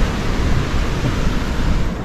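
Steady rush of surf breaking on a sandy beach, mixed with wind on the microphone.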